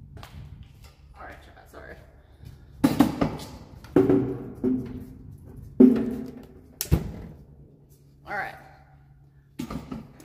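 A run of knocks and thumps as things are moved and set down, the loudest about two thirds of the way in; several are followed by brief ringing from the strings of an acoustic guitar being bumped.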